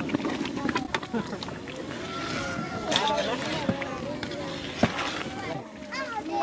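Low background chatter of several voices, with a few sharp knocks and scrapes of a long metal ladle against a large aluminium cooking pot as a thick pea gravy is stirred.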